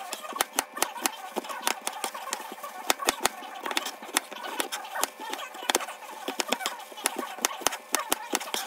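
Chef's knife chopping an onion on a cutting board: quick, sharp knocks of the blade hitting the board, about three to four a second at an uneven pace.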